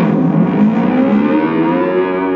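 Electric guitar notes dipped in pitch with the tremolo arm (whammy bar) and brought back up: the pitch drops to its lowest just after the start, then rises slowly over the next second and a half.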